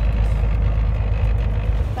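Steady low rumble of a truck's engine and road noise heard inside the cab while driving.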